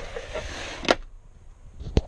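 Rustling handling of the under-seat storage box lid as it is swung shut, with a sharp click about a second in. A loud knock comes right at the end.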